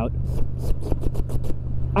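A Yamaha MT-07's parallel-twin engine with an Akrapovič exhaust runs at steady cruising revs. A quick series of short sharp clicks comes in the first second and a half.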